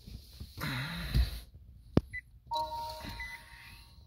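Rustling, then a sharp click about two seconds in, followed by short electronic beeps and a steady chime from a Nissan Leaf's dashboard as the car is switched on.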